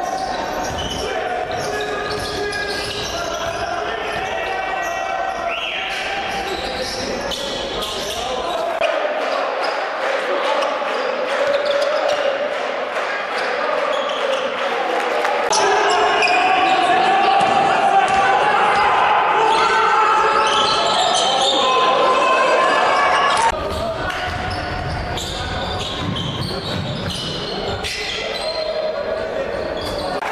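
Live game sound of basketball on a hardwood court in a large, echoing sports hall: the ball bouncing, with voices of players and the crowd. The sound changes abruptly a few times as the footage cuts between games.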